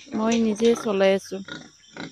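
A woman speaking, her voice strongest for about the first second and then breaking into short fragments.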